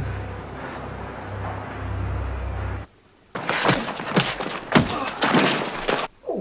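TV-show soundtrack: a steady low hum, which cuts off for a moment just under three seconds in. It is followed by a rapid run of thuds and knocks that go on to the end.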